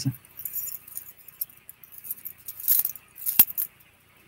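Small metallic clinks and rattles of a piece of costume jewellery being handled and turned over in the fingers. There is a sharper click about three and a half seconds in.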